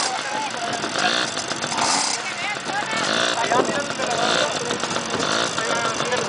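Several small youth dirt bike engines running at a race start line, revved in short repeated blips, with people's voices over them.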